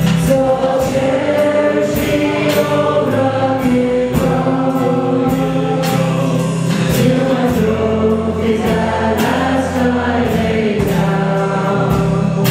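Live church worship band and singers performing a gospel worship song: voices hold long sung notes over a steady drum beat.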